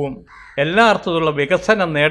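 A man giving a talk in Malayalam into a microphone, with a brief pause just after the start before he speaks again.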